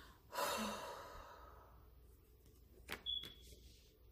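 A long breathy sigh that fades away, followed near the end by two light clicks of tarot cards being handled.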